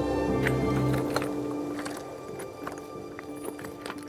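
Background music, its low notes dropping away about a second in, under footsteps on loose rocks: stones knocking and clinking together with a sharp ring, like glass.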